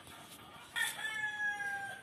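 A rooster crowing once, a long, nearly level call that starts under a second in and lasts just over a second, dropping slightly in pitch at the end.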